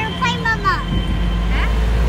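Electric auto-rickshaw riding along a street: a low, steady road and wind rumble that swells about half a second in. Short high-pitched chirps or squeaks sound over it in the first second.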